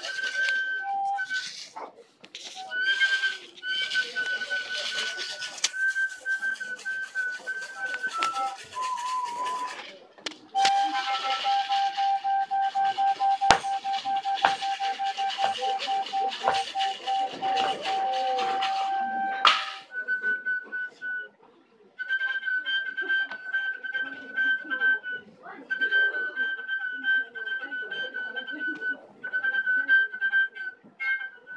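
Solo improvised music: a high, pure whistle-like tone, held and stepping between a few pitches, over scraping and clicking from a washboard. About ten seconds in, a lower tone is held for some nine seconds under a dense rasping scrape with sharp clicks; after a short break near the end the high tone returns in even pulses.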